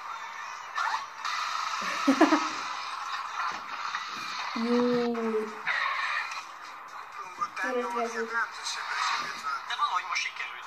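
Television programme audio played through the TV's speaker: music with short vocal exclamations, one of them held for about a second near the middle.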